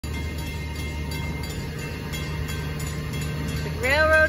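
Railroad crossing warning bell ringing steadily while the gates are down and no train has arrived yet, over a continuous low rumble.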